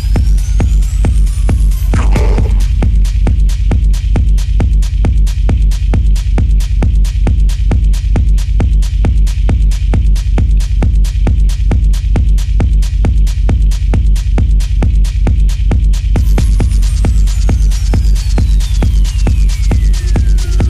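Techno track: a steady four-on-the-floor kick drum over a heavy, droning bass. A rising synth sweep fades out about two seconds in, and a falling sweep starts near the end.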